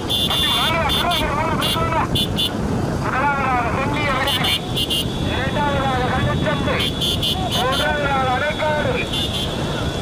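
A race commentator's voice calling the horse-cart race excitedly, in long sing-song runs whose pitch keeps swinging up and down, over a steady din of vehicle engine and road noise.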